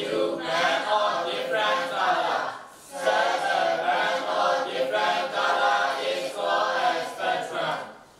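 A class of students reciting together in unison, many voices chanting in phrases, with a short pause about three seconds in and another near the end.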